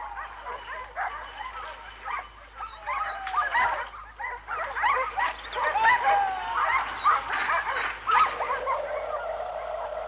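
A pack of hunting dogs barking and yelping excitedly, many voices overlapping at once.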